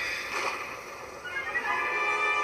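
Animated-film soundtrack: a rushing magic-beam sound effect as the beam fires from a staff, then orchestral score coming in with sustained chords about a second and a half in.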